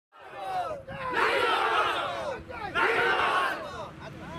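A crowd of men shouting a protest slogan together, fists raised. Two loud chanted lines of about a second each come after a shorter, thinner call near the start.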